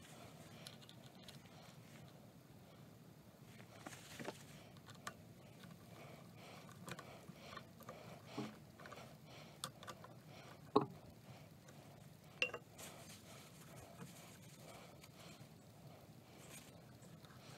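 Faint handling noises: small steel parts clicking and tapping as a greased handle is fitted into the slide table's adjusting wheel, with two sharper clicks about two-thirds of the way in, over a faint steady hum.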